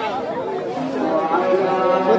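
Several people talking at once: overlapping chatter of voices, with no other distinct sound.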